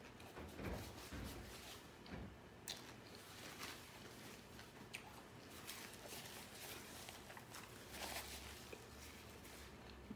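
Faint, close-miked chewing of a mouthful of sub sandwich, with scattered soft mouth clicks.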